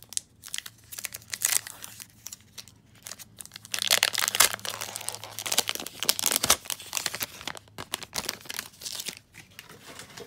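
Foil wrapper of a 2020 Topps Update Series trading card pack being torn open and crinkled by hand. The crackling is irregular, with a dense, loud run about four seconds in, then it thins out.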